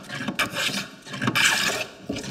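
Metal scrub plane with a curved iron cutting along the edge of a wooden board in two strokes, a short one at the start and a longer, louder one about a second in, hogging off super thick shavings.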